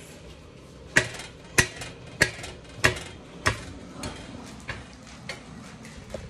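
A regular series of sharp knocks, about one every 0.6 seconds: five loud ones, then three fainter ones.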